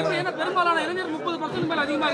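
Overlapping chatter of several voices: a crowd of reporters talking at once, with no single clear speaker.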